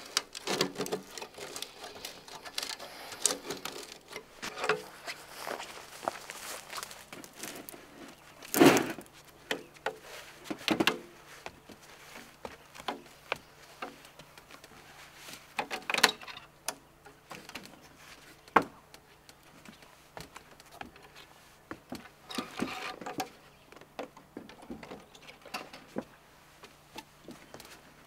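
Scattered knocks, clunks and clicks from a metal bucket of roofing tar being handled, its lid pressed on, and a ladder being climbed, the loudest knock about nine seconds in.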